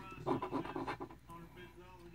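A coin scraping the silver coating off a scratch-off lottery ticket, short rubbing strokes as a number is uncovered.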